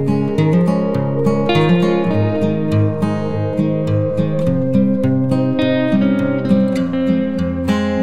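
Background music on acoustic guitar: a steady run of plucked notes and strummed chords.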